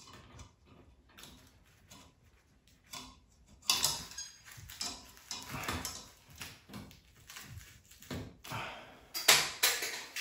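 Pliers snipping the looped ends off a light fixture's stranded wire leads, with scattered clicks and rustles from handling the fixture base. It is nearly quiet for the first few seconds, and the clicks grow louder near the end.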